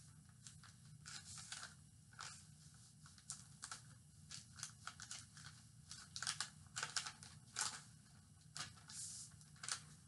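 A sheet of white paper being folded and creased by hand: irregular soft rustles and crinkles, busier in the second half, over a faint steady low hum.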